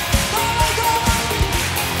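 Live pop concert music with a steady kick-drum beat, about two beats a second, under a held sustained note.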